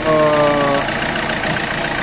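Ford Duratorq TDCi turbodiesel engine idling steadily with an even diesel ticking. It runs with normal, settled engine noise after a turbocharger replacement.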